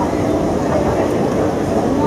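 Steady rumbling noise in a large indoor hall with escalators, with indistinct voices faintly mixed in.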